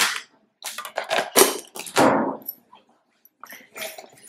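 A quick run of sharp knocks and clatters, the loudest about a second and a half in, and one at about two seconds that rings on for half a second; a few fainter knocks near the end.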